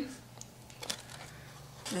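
Faint scratching and a few light ticks of a marker being drawn along foam board as it traces around a shape.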